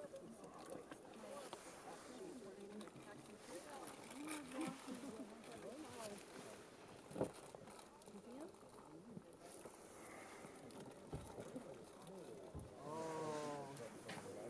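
Faint, low talk of people speaking quietly, the words not made out, with a single sharp click about seven seconds in.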